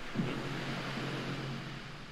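Movie-trailer score and sound design: a low held tone, starting just after the beginning and fading near the end, over a steady rushing noise.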